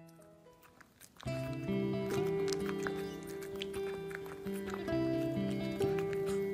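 Background music: a few soft held notes, then about a second in a fuller, louder passage of sustained chords with light percussive ticks.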